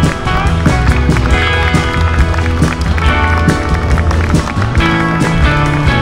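Loud music with a steady beat and heavy bass.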